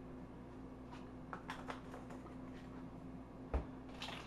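Quiet kitchen room tone with a steady low hum, a few faint clicks about a second and a half in, and one soft knock near the end.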